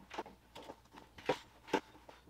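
A handful of short clicks and rustles from things being handled, four in all, the two in the second half loudest.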